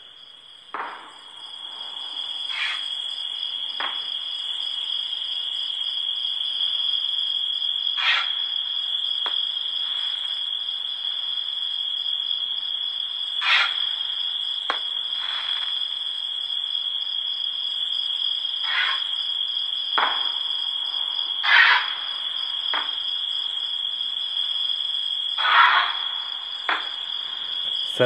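Recorded fireworks ambience played by a smart-lighting app: a steady high-pitched trill throughout, with a dozen or so irregular firework pops and crackling bursts every second or two, the loudest about two-thirds and nine-tenths of the way through.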